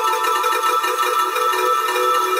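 Electronic jungle/breaks track in a stripped-back passage: layered steady melodic tones with faint ticking percussion on top, and the bass and kick absent.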